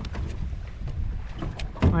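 Low, uneven rumble of wind buffeting the microphone, with a few faint clicks of hands handling a fish on a plastic measuring board. A man starts talking at the very end.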